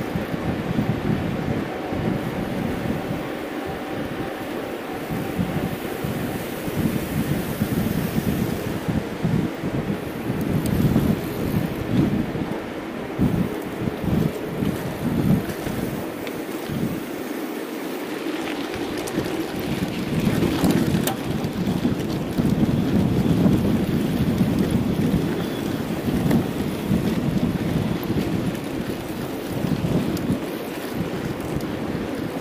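Wind gusting over the microphone of a camera carried on a mountain bike riding at race speed, with the bike's rolling noise underneath.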